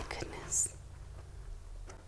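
A woman's soft whisper: a short, high hiss about half a second in, then quiet room tone with a faint click near the end.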